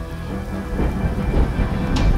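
Thunderstorm sound effect of thunder and rain, getting louder over a steady musical drone, with a sharp crack near the end.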